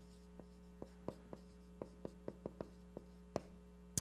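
Faint marker strokes on a whiteboard: a run of short, irregular taps and scratches as a word is written letter by letter, over a steady low electrical hum.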